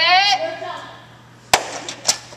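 A short shouted start command that falls in pitch, then about a second and a half in a single sharp crack: the start signal for a sprinter in starting blocks.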